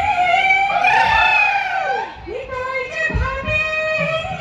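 Live Bihu folk music: dhol drums beating under a held, wavering melody line that steps lower about halfway through, with a heavy run of drum strokes a little after three seconds.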